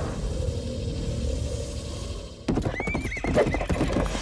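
After a low rumbling drone, a horse suddenly neighs about two and a half seconds in: a high, wavering whinny over a clatter of hooves.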